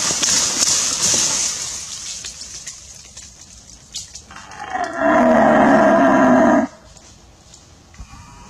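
A red deer's rutting roar (berrea): one deep, loud roar of about two seconds past the middle. It follows a breathy hiss that fades away at the start.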